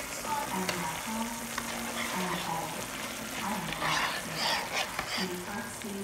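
Shredded carrot and seaweed simmering in broth in a frying pan, bubbling and sizzling steadily, with a metal spoon clinking and stirring against the pan, loudest a few seconds in. A TV voice murmurs faintly underneath.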